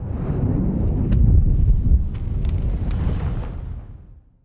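Logo-reveal sound effect: a loud, deep rumbling boom with a few sharp crackles. It swells over the first second and fades out near the end.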